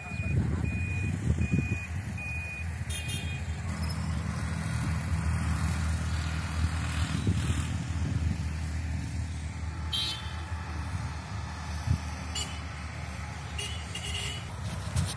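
A motor vehicle's engine running steadily. A beeper sounds short, even beeps about twice a second and stops a few seconds in.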